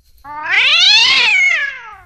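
A cat meowing: one long meow that rises and then falls in pitch.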